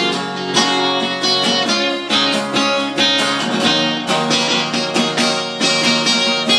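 Acoustic guitar strummed, chords ringing on between repeated strokes.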